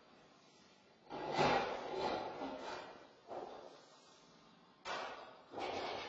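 Sheet-metal stove flue pipe being handled and fitted: four bursts of clattering and scraping. The longest starts about a second in and lasts nearly two seconds; shorter ones follow.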